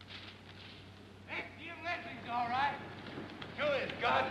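Voices of a few people with long, wavering, drawn-out pitches, starting about a second in and again near the end, over a steady hiss.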